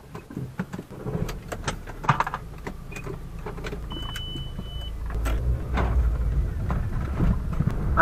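Car heard from inside the cabin as it pulls away, its engine and road rumble building over the second half. Before that come scattered clicks and knocks, and a single short high beep about four seconds in.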